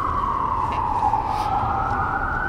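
An emergency-vehicle siren wailing: one long tone that slides slowly down in pitch and starts to climb again near the end.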